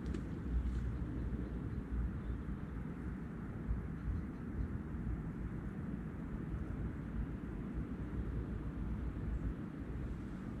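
Wind buffeting the microphone outdoors: a continuous, gusty low rumble.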